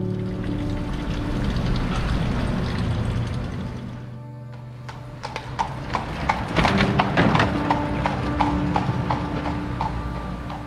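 A carriage horse's hooves clip-clopping on a paved street as a horse-drawn carriage passes, starting about halfway through and loudest a little after that, with background music underneath.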